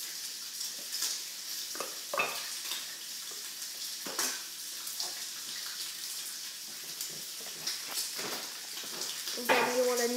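Graphite pencil scratching on a sketchpad page: a run of short scratchy drawing strokes over a steady light hiss.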